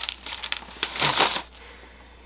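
Paper crinkling and rustling as it is handled: a few short rustles, then a louder crinkle about a second in.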